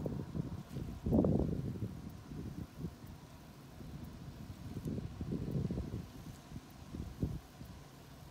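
Wind gusting against the microphone: an uneven low rumble that swells and fades, strongest about a second in, with some rustling of grass and plant stems.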